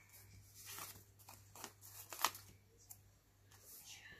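Sticker sheet and paper being handled: soft rustles and scrapes as stickers are worked off their backing, with a sharper crackle a little over two seconds in.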